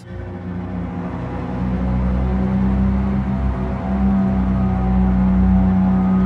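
Vienna Smart Spheres '2049' sound-design preset played on a keyboard: low held notes that swell over the first couple of seconds, then sustain steadily.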